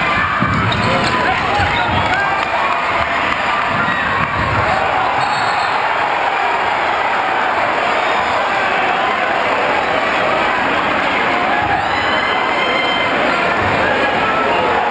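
Crowd noise in a packed, echoing gymnasium during a basketball game: many voices shouting and cheering at once, with the ball bouncing on the court during the first few seconds.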